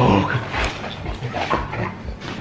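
A dog vocalizing during rough play with a person, in a few bursts, the first and loudest right at the start.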